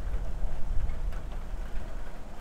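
Wind buffeting a clip-on microphone outdoors: a loud, uneven low rumble that rises and falls.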